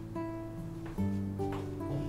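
Background acoustic guitar music: plucked notes ringing on, with a new chord struck about a second in.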